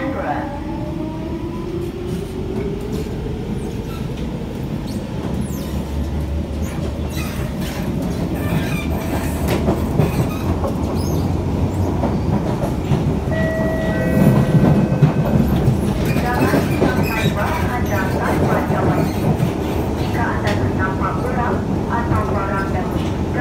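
Singapore MRT C651 train running, heard from inside the car: the traction inverter's whine rises in pitch over the first couple of seconds as it accelerates. It then gives way to steady wheel-on-rail rumble and clatter, with a few brief high tones near the middle.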